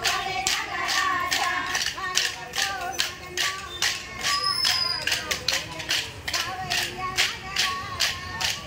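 Kolatam sticks clacked together in a steady rhythm, about three strikes a second, while a group of women sing a folk song.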